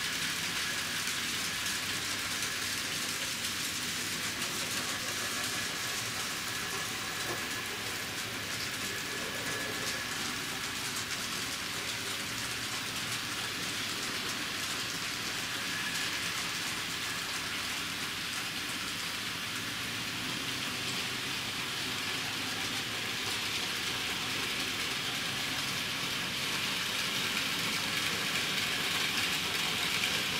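N-scale model trains running through the staging yard and helix: a steady, even rolling hiss of small wheels on the rails with motor whir, slightly louder near the end.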